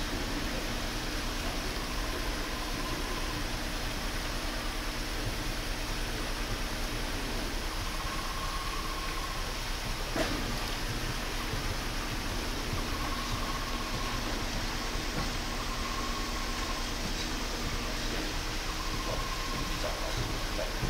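Steady background noise with a low hum, like a fan or air handling, with a few faint short whistle-like tones and a single click about ten seconds in.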